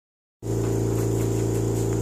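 Steady, low machine hum from a running household appliance. It starts a moment in, after a brief silence.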